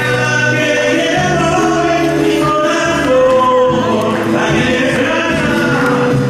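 A song performed live: a man singing into a microphone, with musical accompaniment.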